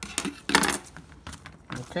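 Sliced red onion being pulled apart and tossed on a plastic cutting board: a few light clicks and knocks, with a brief crisp rustle about half a second in.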